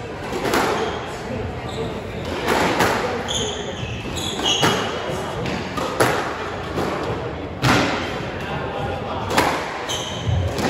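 Squash rally: the rubber ball is struck by rackets and cracks off the court walls in sharp knocks every one to two seconds, each ringing briefly in the enclosed court. Short high squeaks of court shoes on the wooden floor fall between the shots.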